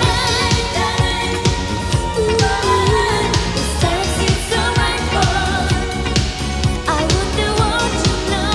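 A woman singing a Japanese pop song live, her voice wavering in vibrato over a full band with a steady, regular drum beat.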